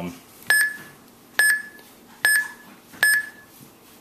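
Four short, high beeps about a second apart, each starting with a click, as keys are pressed on the keypad of an Arduino-based rocket launch controller: the controller's key-press feedback while a launch code is typed in.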